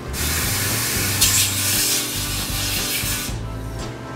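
A steady hiss of pressurised spray, starting suddenly, strongest about a second in, and cutting off after about three seconds.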